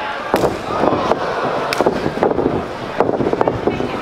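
A string of sharp, irregular cracks and thuds, several a second, over a steady crowd noise that echoes in the hall: a pro-wrestling match in progress, with bodies and feet hitting the ring.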